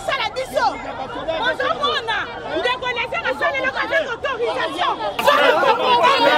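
Several people's voices talking and calling over one another, growing louder about five seconds in.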